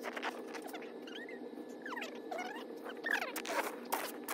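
Snow shovelling played back at five times speed: a quick run of shovel scrapes and chops in packed snow, with high squeaky chirps over a steady low hum.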